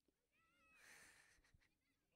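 A faint, short, high-pitched call that wavers slightly, followed by a brief hiss.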